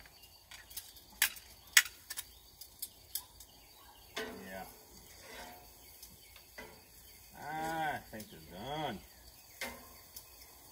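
Metal grill tongs clicking and clacking against a gas grill's grate while turning bratwursts, several sharp clicks with two loud clacks about a second in. In the second half come a few short wordless vocal sounds, rising and falling in pitch.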